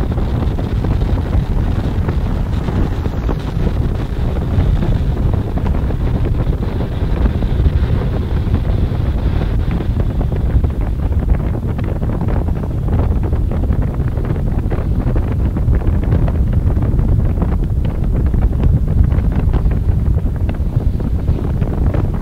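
Falcon 9 first stage's nine Merlin engines heard from a distance as a steady, deep rumble, with crackling joining in from about halfway.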